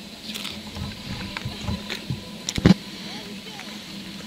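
Handling noise from a handheld camera as it pans: low outdoor background noise with a few soft thuds and one sharp knock about two and a half seconds in.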